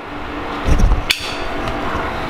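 Camera handling noise as the camera is picked up and moved: a low rumble, then a single sharp knock about a second in, over a steady low hum.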